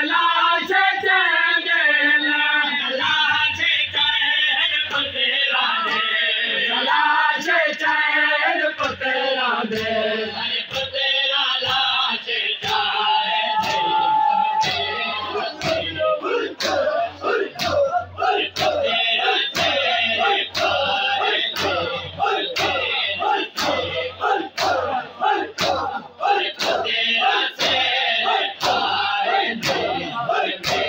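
A chorus of men chanting a noha, an Urdu mourning lament. From about halfway through, the crowd's hands strike their bare chests in matam, sharp regular slaps about one and a half a second in time with the chant.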